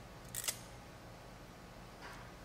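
RJ45 crimping tool (ponchadora) squeezed on a connector: one short, sharp click about half a second in as the handles close on the crimp, then only faint room tone.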